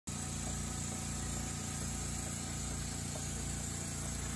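Small oscillating-cylinder model steam engine running steadily on compressed air, with a fast, even beat from the cylinder and flywheel.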